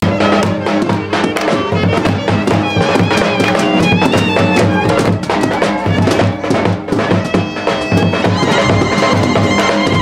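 Traditional folk dance music: a shrill reed wind instrument carries the melody over a steady, driving drum beat. It starts abruptly right at the beginning, cutting in over the talk.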